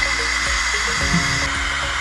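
Ninja Foodi pressure cooker venting through its pressure-release valve: a steady, loud hiss of escaping steam with a thin high tone in it, as the built-up pressure is let out after cooking.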